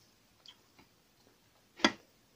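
Close-up eating sounds while eating rice and fish by hand: a faint click about half a second in, then one sharp, loud click near the end.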